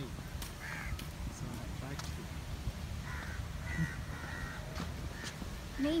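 Outdoor ambience: a steady low rumble with a few short, harsh bird calls, crow-like caws, about a second in and again three to four and a half seconds in.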